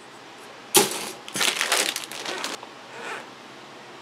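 Plastic model-kit runners and their plastic bags being handled: a sharp plastic clack about three-quarters of a second in, then about a second of crinkling and rustling, with a brief faint rustle near the end.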